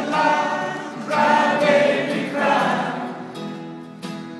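A large group of voices singing together, choir-like, in swelling phrases over acoustic guitar and cello.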